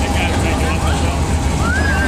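Low, steady engine rumble of cars cruising slowly past, a lowered Chevrolet pickup and then a Corvette, under crowd voices.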